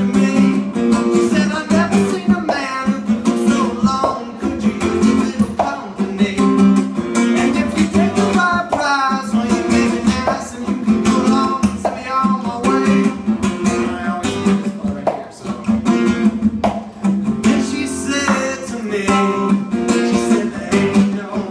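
Acoustic guitar strummed in a steady rhythm, with percussive chord strokes.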